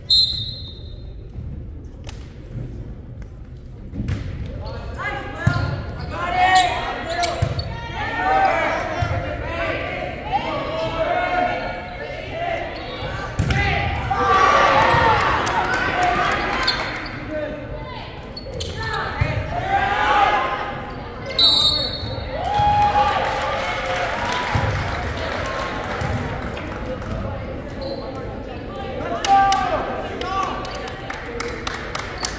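Volleyball rally in a large, echoing gym: players' voices calling out over one another and the ball thudding off hands and the floor. A short, high whistle sounds at the start and another about two-thirds of the way through.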